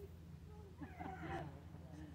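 A faint, brief high-pitched vocal sound with a wavering pitch about a second in, over a low steady hum.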